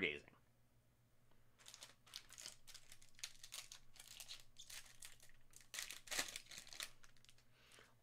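Foil wrapper of a 2020/21 Panini Donruss Optic basketball hobby pack crinkling as it is torn open by hand, in quick faint bursts that start about a second and a half in.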